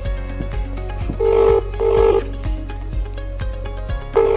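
Ringback tone of an outgoing call on an imoo Z6 watch phone: one double ring, two short steady beeps with a brief gap between them, about a second in, while the call waits to be answered. Background music with a steady beat plays underneath.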